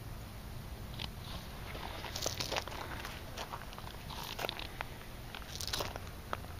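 Footsteps crunching on gravel and dry leaves: a scatter of irregular crunches, loudest about two seconds in and again near the end.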